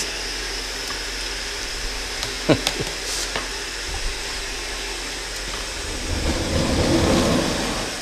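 Cold water running through the jacket of a candy cream beater, a steady rushing that swells over the last two seconds.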